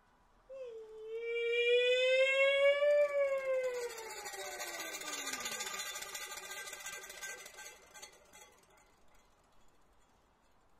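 A Kun opera singer holds one long high sung note that rises a little, then slides down in pitch over a few seconds. A quieter sustained sound lingers after it and fades away about eight seconds in.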